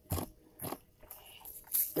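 Handling noise from a gloved hand rubbing and tapping a phone close to its microphone: a few faint, short scrapes and crackles.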